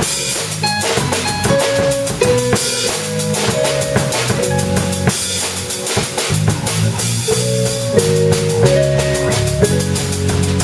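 Live trio playing: a drum kit keeping a busy, steady beat on cymbals, snare and bass drum, an electric bass line underneath, and piano chords from a Korg keyboard.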